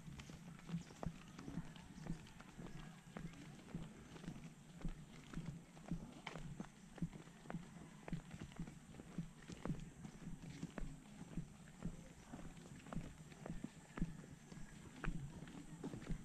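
Footsteps of people walking on a concrete road, short light slaps at a walking pace of about two a second.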